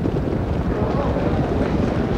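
Racetrack ambience as the field comes to the start: a steady low rumble and wind-like noise with a faint murmur of voices, and no single sharp sound.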